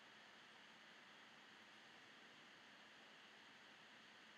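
Near silence: faint steady recording hiss.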